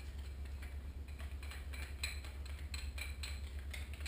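Light, irregular clicks and small rattles from an Ego 11 paintball marker being handled and turned over in the hands, over a steady low hum.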